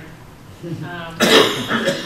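A single loud cough about a second in, right after a short spoken 'um'.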